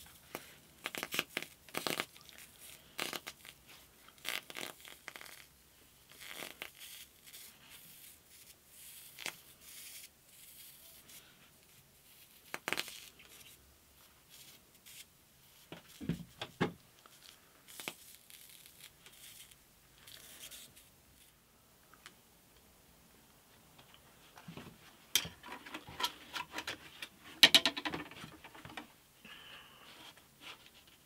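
Thin walnut guitar side being rubbed and pressed against a hot bending iron with gloved hands while it is given a slight pre-bend: scattered short scraping and rubbing sounds. There is a dull thud about halfway through and a few louder knocks and rattles near the end as the wood is moved about.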